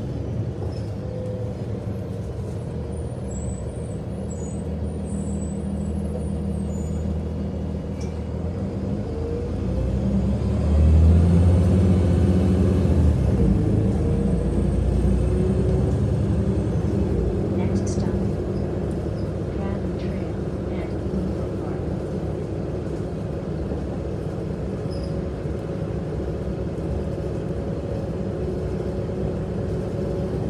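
Heard from inside a moving city bus: its engine and drivetrain run steadily with road noise. About ten seconds in the engine note rises and grows louder as the bus accelerates, then settles back to a steady cruise.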